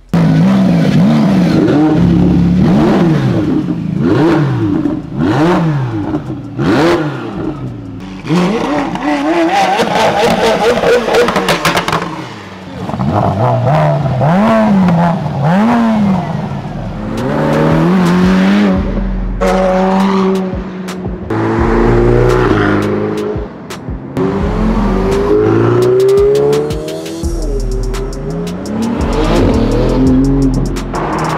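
Supercar engines revving hard, the pitch swinging up and down again and again, then cars accelerating and running at speed.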